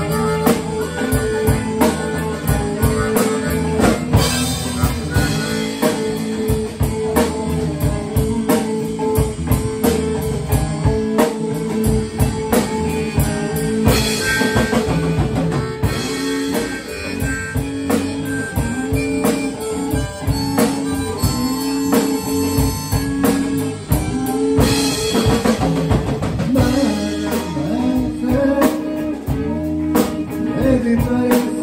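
Live blues-rock band playing an instrumental stretch: electric guitars, electric bass and drum kit keeping a steady beat, with held notes from a harmonica played into the vocal microphone.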